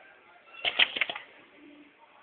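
Benchtop wire-stripping machine for HDMI inner conductors cycling once: a quick clatter of several sharp clacks lasting about half a second, starting about half a second in.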